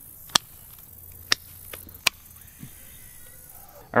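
Hand pruners snipping through green milkweed stems: three sharp clicks in the first two seconds, with a fainter one between the last two.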